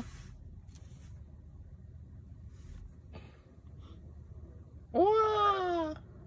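A cat meows once near the end: a single call about a second long that rises and then falls in pitch. Before it, only a low steady hum and a few faint clicks.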